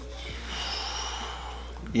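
A man's soft, airy breath out lasting about a second and a half, over a low steady hum.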